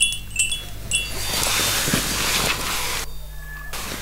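High, tinkling chimes ring in short notes for about the first second. A loud, even rushing hiss then rises and takes over, breaks off briefly a little after three seconds, and returns more softly.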